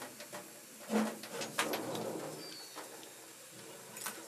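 Sharp metallic clicks and scraping from a screwdriver tightening the capacitor clamp screw on a ceiling fan's metal motor housing, the loudest clicks just after the start and about a second in.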